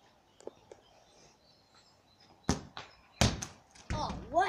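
A football kicked hard, a sharp thud about two and a half seconds in, then a second loud impact less than a second later as the ball strikes its target, followed by a couple of smaller knocks as it comes to rest.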